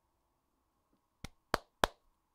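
Three quick hand claps a little over a second in, evenly spaced about a third of a second apart, the last two the loudest.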